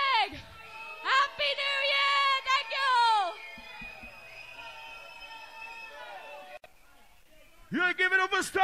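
Music from a live bounce (donk) rave set: a vocal line with drawn-out, falling notes for about three seconds. It then thins to faint held tones and a brief near-quiet gap, and an MC's shouting voice comes in near the end.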